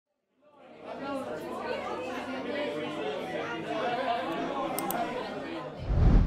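Indistinct chatter of many voices talking at once, no single word clear, fading in just under a second in and cutting off shortly before the end.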